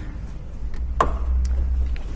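A car bonnet's prop rod being unhooked and stowed as the bonnet is lowered: one sharp click about a second in, with a few faint ticks, over a low rumble.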